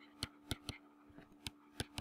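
Stylus pen tapping and scratching on a tablet surface during handwriting: about six light, irregular clicks, over a faint steady hum.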